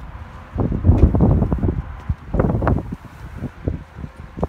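Wind buffeting the microphone in irregular low rumbling gusts, loudest about a second in and again around two and a half seconds in.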